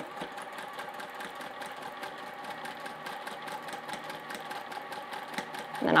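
Sewing machine stitching a seam that joins two fabric binding strips, running at a steady speed with a rapid, even ticking of the needle.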